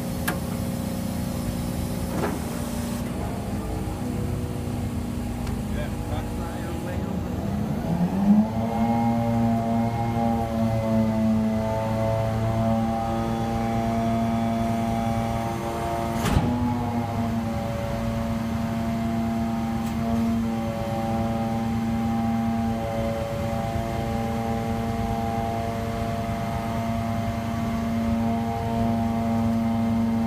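Faun Powerpress refuse truck running its rear compaction blade cycle: the truck's engine and hydraulics run steadily, the engine rises in pitch about eight seconds in and then holds a steady, higher roar as the blade sweeps and packs. A single sharp knock comes about sixteen seconds in.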